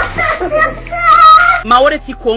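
A child's voice, drawn out and wavering, over background music with a steady low bass.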